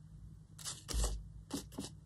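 Paper scraps rustling in short bursts as a hand sorts through a plastic tray of cut-up paper pieces and tickets, with a low bump about a second in.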